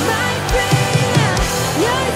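Live worship band playing a rock-style song: drum kit with a steady kick, electric guitar and keys, and a woman singing lead.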